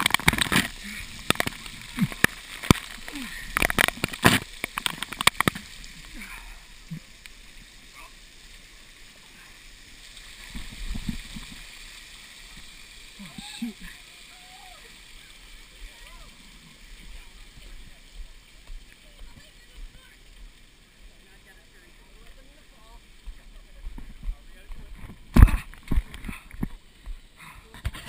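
Water spray pattering on the camera: a dense crackle of drops for the first five seconds or so, then a fainter wet hiss with scattered voices, and one sharp knock near the end.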